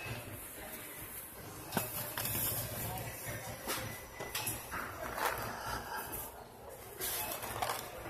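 Supermarket background: indistinct distant voices over a steady low hum, with several brief rustles and brushes as the phone rubs against clothing.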